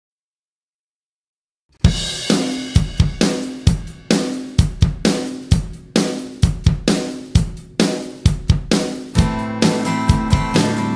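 A drum kit begins after almost two seconds of silence and plays a steady beat on hi-hat, snare and bass drum, with cymbals, about two strong hits a second. Near the end a guitar comes in over the drums.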